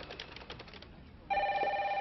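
Telephone ringing: one ring of several steady tones starts suddenly a little over a second in, after faint clicks.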